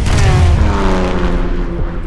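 Porsche 911 RSR GT race car passing at speed, its flat-six engine note starting suddenly and sliding down in pitch as it goes by.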